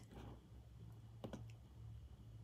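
Near silence: room tone with a steady low hum, and two faint short clicks a little past halfway.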